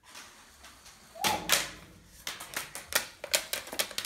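Toy flying butterfly released by hand and fluttering through the air, with a loud sharp clatter just over a second in, then a run of irregular quick clicks and taps as it flaps and comes down onto a wooden floor.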